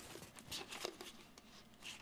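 Faint rustling of a plastic bag and soft handling ticks as the bag is pulled off a four-inch inline fan.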